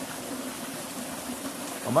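Steady rushing and trickling of a small woodland stream.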